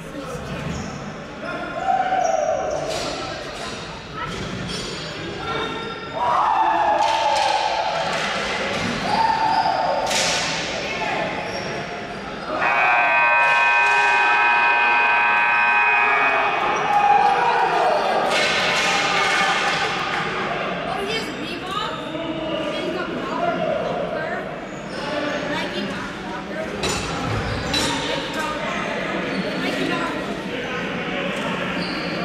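Players shouting and cheering in an echoing indoor arena, with sticks and the ball knocking on the floor. About 12 seconds in, the scoreboard buzzer sounds for about three and a half seconds to end the game.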